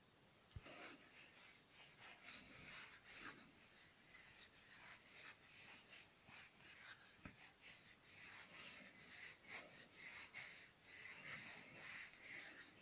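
Faint rubbing as wax finish is worked by hand into a small oak napkin ring, a run of short, irregular strokes.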